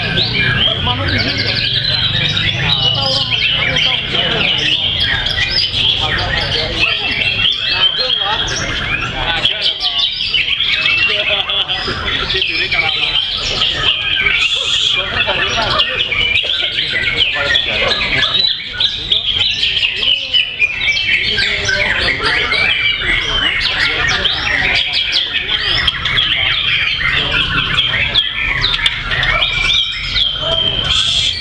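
White-rumped shama (murai batu) singing in a contest cage: a continuous, dense stream of quick whistles, trills and harsh notes, with other caged shamas singing over one another around it.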